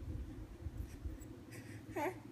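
Faint rustling of fabric and a low rumble from handling the phone, with a brief rising vocal sound right at the end.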